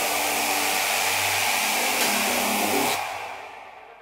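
A steady white-noise wash from a synthesizer in a techno breakdown, with the drums dropped out and a faint low synth tone beneath. About three seconds in the noise fades away, its highs dying first, leaving the track almost silent.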